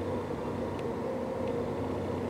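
Steady mechanical hum with a low hiss, a machine running in the background, with two faint ticks in the second half.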